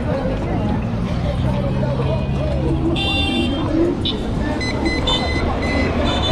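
Steady low road and wind rumble from riding a group of electric scooters through city traffic, with voices. From about three seconds in, several high-pitched electronic beeps and tones come in short bursts.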